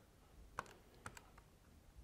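Button presses on a Casio scientific calculator: a few faint, short plastic key clicks against near silence.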